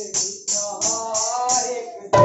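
A voice singing a devotional kirtan melody, kept in time by crisp jingling strokes of a hand-held jingle instrument, about three strokes a second.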